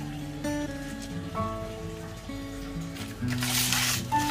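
Background music of slow, held notes. Near the end, a brief rustle of paper.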